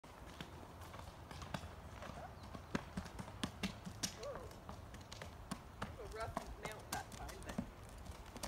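A horse's hooves knocking at an irregular walking pace as it steps from the dirt trail up onto a wooden balance beam.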